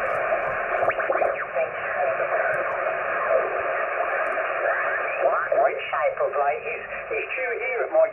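An Icom IC-706MKII transceiver's speaker plays the 40 m band in lower sideband while the tuning dial is turned. Under steady band hiss, single-sideband voices slide up and down in pitch as the dial sweeps past them. From about five seconds in, a station's voice comes through more clearly.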